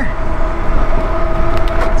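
Wind rushing over the microphone on a fast-moving electric bike, with a steady whine from its Bafang Ultra Max 1000 W mid-drive motor pulling under high pedal assist in seventh gear. A second, lower steady tone joins about one and a half seconds in.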